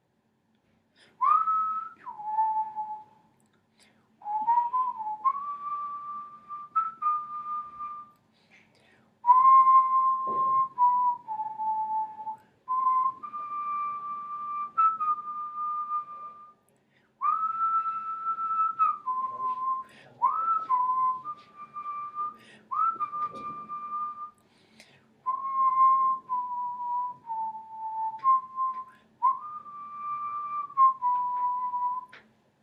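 A person whistling a simple melody in short phrases of held notes, stepping between a few pitches with brief pauses between phrases; several phrases start with a quick upward slide into the note.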